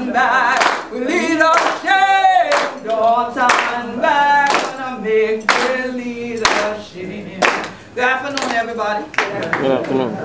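Singing voices with hands clapping along in time, about one clap a second.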